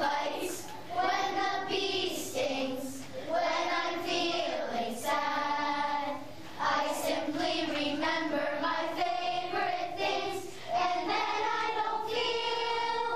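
Children's choir singing a Christmas carol, in held phrases with short breaks between them.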